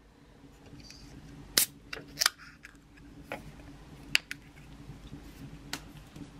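Beer can being opened: two sharp cracks of the ring-pull close together about two seconds in, the second followed by a short fizz, then a few lighter clicks and taps over a low steady hum.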